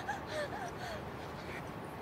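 A woman's short, breathless gasps while running hard, trailing off in the first second into a steady background hiss.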